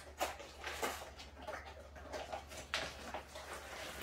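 Cardboard packaging being handled: a box opened and its contents slid out, with irregular rustles, scrapes and a few sharp taps, one louder than the rest about three-quarters of the way through.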